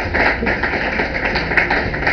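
Studio audience clapping, a dense patter with a fairly even beat of about four to five claps a second.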